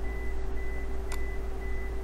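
Steady low electrical hum of the recording setup with a faint high-pitched whine that breaks on and off, and a single click about a second in.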